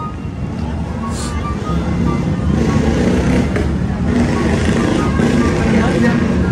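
A motor vehicle's engine running close by, its low rumble growing steadily louder, over street traffic noise.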